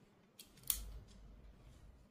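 Small pull-out camping lantern being handled: a light click, then a sharper, louder click a moment later, with a soft low thump as the plastic parts snap.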